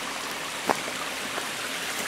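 Steady rushing of a small stream of water pouring out of a culvert pipe and running over mud and stones.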